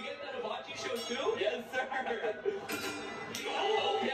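Quiet conversation among people at a food truck, with a few light metallic clinks.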